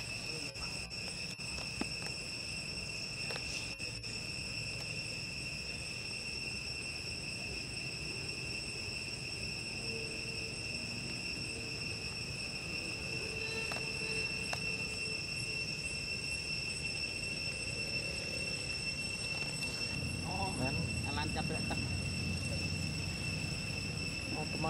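A continuous insect drone: several steady high-pitched tones holding unchanged, over a low rumble.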